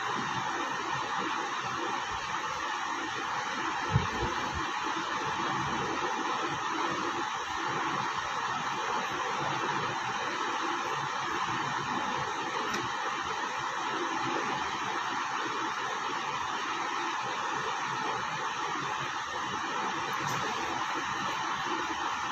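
Steady, even background hiss with no speech, and a single soft knock about four seconds in.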